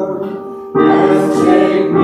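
A group of voices singing a hymn together. The singing falls away briefly between phrases, and a new line starts under a second in.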